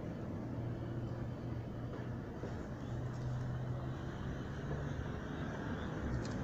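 Steady low motor hum and rumble, its pitch shifting slightly a few times.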